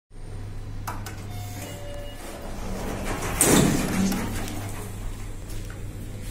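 Schindler lift doors sliding open, a loud rushing noise about three and a half seconds in, over a steady low hum. A couple of sharp clicks come about a second in.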